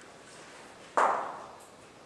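A single sharp knock about a second in, dying away in a short echo off bare concrete walls.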